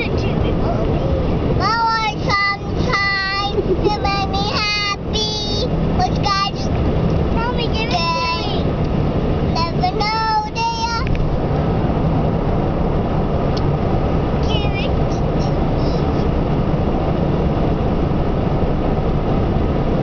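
A young girl singing in a high voice, a tune that bends and holds notes, which stops about eleven seconds in and comes back briefly near fifteen seconds. Steady road and engine noise from inside the cabin of a moving car runs underneath.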